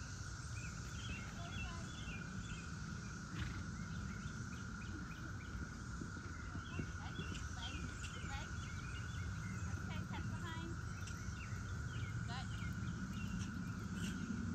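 Birds chirping and singing over a steady high hum and a constant low rumble.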